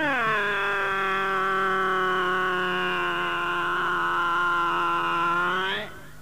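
A singer holding one long note: it slides down at the start, stays steady for about five seconds, then lifts slightly and cuts off. A low steady tone lies beneath it.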